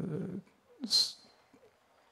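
A man's drawn-out hesitation sound 'euh' into a handheld microphone, then about a second in a short falling vocal sound and a sharp hiss of breath, followed by a pause.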